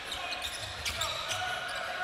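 A basketball being dribbled on a hardwood court: a few sharp bounces, irregularly spaced, over the murmur of a half-full arena.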